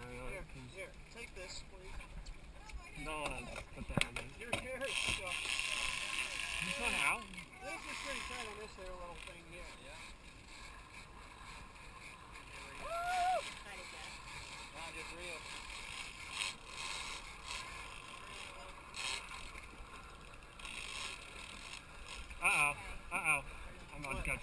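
Boat at sea: water washing against the hull, with faint voices now and then.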